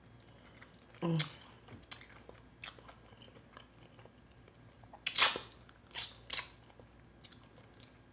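Close-up eating sounds of a person gnawing meat off a turkey neck bone held in the fingers: scattered chewing and biting noises, with the loudest bursts about five seconds in and twice more around six seconds.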